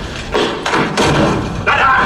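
Heavy thuds of a man's head being slammed down onto a table, as the pencil trick is carried out. Near the end a man's voice says 'ta-da'.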